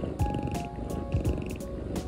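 A cat purring steadily while breathing through an inhaler spacer mask, a sign it is relaxed and content during its asthma inhaler treatment. Light background music plays over it.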